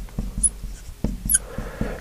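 Marker pen writing on a glass lightboard: a string of short taps and strokes, with a couple of brief high squeaks from the marker tip on the glass, as an arrow and letters are written.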